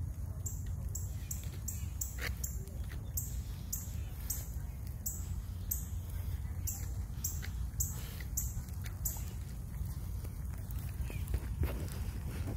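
Outdoor ambience: a steady low rumble, like wind on the microphone. Over it, short high-pitched chirps repeat two or three times a second.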